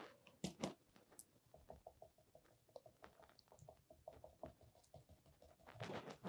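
Near silence with many faint, irregular light taps: a paintbrush dabbing acrylic paint onto a stretched canvas.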